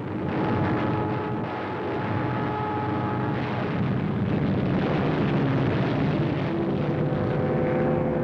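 Continuous roar of aircraft engines: a dense, even rumble with steady whining tones riding over it.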